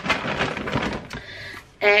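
Plastic shopping bag rustling and crinkling as a hand rummages inside it, fading out after about a second.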